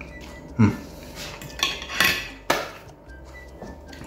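A metal fork clinking against a plate: about four sharp clinks over a second and a half.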